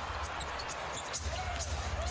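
Faint game-broadcast sound of a basketball being dribbled on a hardwood court, over arena background noise, with a faint bit of a voice partway through.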